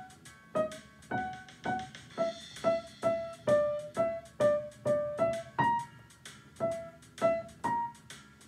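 Grand piano played in a blues improvisation: a right-hand melody of single struck notes, a little over two a second, over lower left-hand notes, each note ringing briefly before the next.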